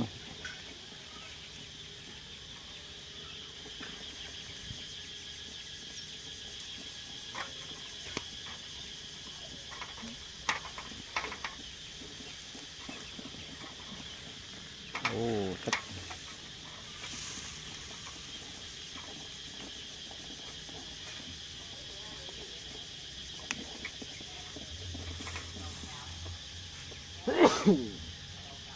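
Steady high-pitched chirring of crickets or other insects, with a few light clicks scattered through and two short falling vocal exclamations, one about halfway through and one near the end.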